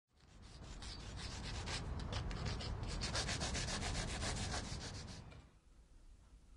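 Rapid back-and-forth scraping strokes of something rubbed hard on a rough surface, fading in at the start and fading out just before the end.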